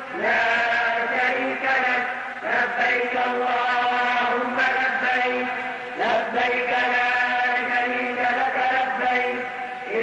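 A solo voice chanting an unaccompanied Islamic nasheed in long, held melodic phrases, each breaking off and starting again every two to three seconds.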